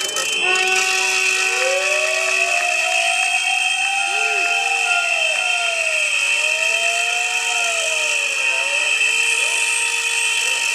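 A crowd of protesters blowing shrill whistles together, starting suddenly and holding on as a dense steady shriek. Lower horn tones slide slowly up and down in pitch beneath it.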